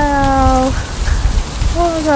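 A woman's voice holding one long note that slides slightly down in pitch and stops under a second in, over a steady rough rumble of outdoor noise on the microphone.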